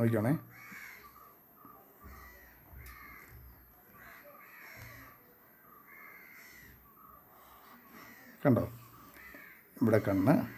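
Crows cawing: a loud caw about eight and a half seconds in and another near the end, with fainter calls repeating in between.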